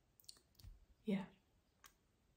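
A woman's voice saying a single short "ja" a little after one second in, with a few faint clicks before and after it, one near the start and one near the end.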